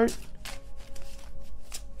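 A deck of tarot cards being shuffled by hand: a quick, continuous run of papery flicks and snaps.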